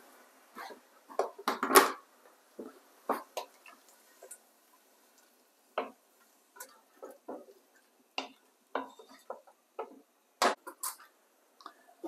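Wooden spoon stirring chunks of vegetable and water in a stew pot: scattered short knocks and scrapes against the pot, the loudest about two seconds in.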